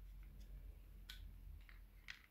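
Near silence: a low room hum with a few faint, short clicks of fine metal tweezers handling small model parts.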